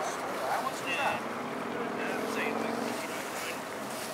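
Outdoor waterfront ambience: a steady rush of wind on the microphone with distant voices of onlookers. A faint steady low tone sounds briefly from about halfway through.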